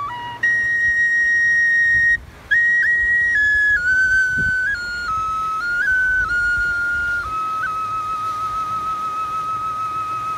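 Background music: a high solo woodwind melody moving in stepwise notes, with a brief break a couple of seconds in, settling near the end into a long held note with a light vibrato.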